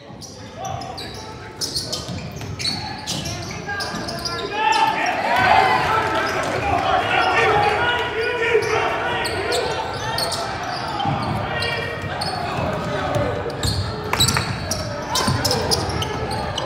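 Basketball bouncing on a hardwood gym floor during play, with players' and spectators' voices echoing in the hall. The voices swell about four seconds in and keep up a steady chatter.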